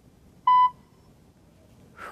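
A single short electronic beep: one steady tone lasting about a quarter of a second, about half a second in.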